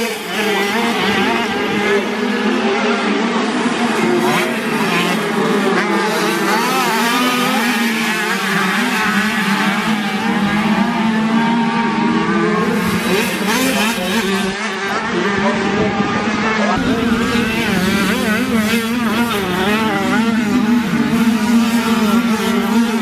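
Several classic 50cc two-stroke motocross bikes racing, their small engines revving up and down and overlapping one another without a break.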